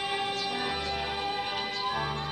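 A symphony orchestra playing, its strings holding long sustained notes over low notes from the cellos and double basses.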